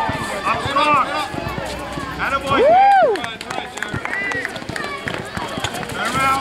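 Players and onlookers shouting and calling out during a youth basketball game, with running footsteps on the court. A single long yell that rises and falls about two and a half seconds in is the loudest sound.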